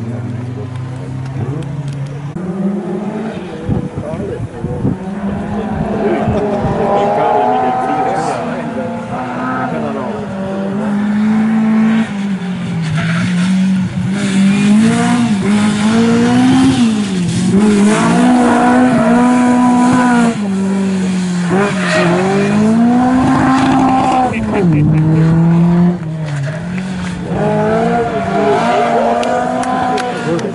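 Classic Škoda rally coupé at racing speed, its engine revs climbing and dropping again and again through gear changes and lifts, louder in the second half as it comes closer.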